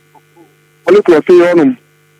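A man's voice speaking one short phrase in the middle, with silent pauses before and after and a steady hum underneath.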